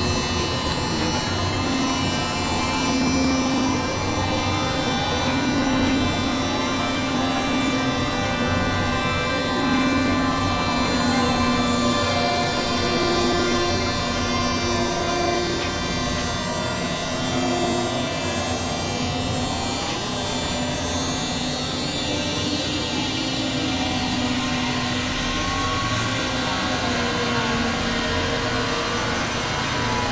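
Dense experimental noise music: several tracks layered at once into a wash of held drone tones and grainy hiss, with a few pitches sliding up and down about two-thirds of the way in.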